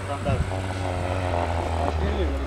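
Off-road car's engine droning steadily in the distance as it drives the course, with people talking over it.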